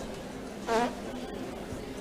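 A pause in the talk, filled with the low steady background noise of a crowded room, with one short faint voice a little under a second in.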